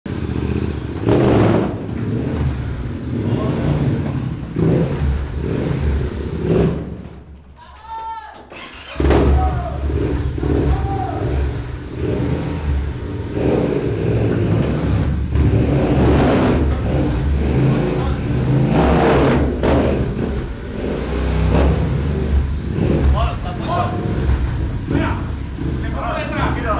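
Yamaha Ténéré 700's parallel-twin engine revving in repeated surges as the bike is ridden up a steep wooden staircase, ringing off the walls of a concrete stairwell. The engine drops off to a lull for about two seconds around seven seconds in, then picks up again.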